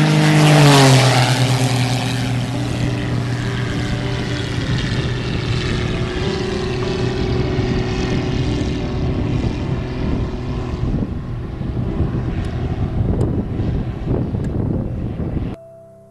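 Single-engine aerobatic propeller biplane on a low pass: the engine and propeller drone drops in pitch as the plane goes by about a second in. It then settles into a steady drone as the plane climbs away, and cuts off suddenly shortly before the end.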